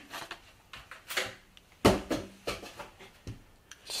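Polystyrene foam packaging being handled as its lid is lifted off and set aside: a few separate knocks and scrapes, the loudest a thump just under two seconds in.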